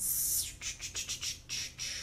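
Plastic silkscreen transfer sheet crinkling and rustling as it is handled: a sharp crackle at the start, then a string of short crackles.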